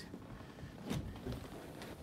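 Quiet background hiss with a faint single tap a little under a second in and a weaker one shortly after.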